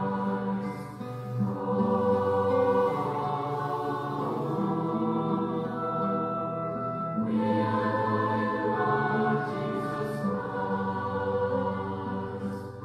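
A choir singing slowly in long held chords. The chord changes about a second and a half in and again about seven seconds in.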